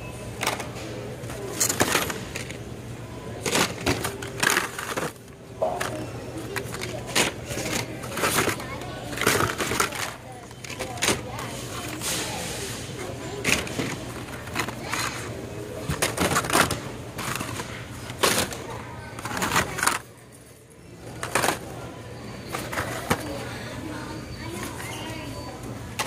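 Hot Wheels blister-pack cards, plastic bubbles on cardboard, clacking and rustling against each other as hands rummage through a bin of them: an irregular run of sharp clacks with a brief lull near the end.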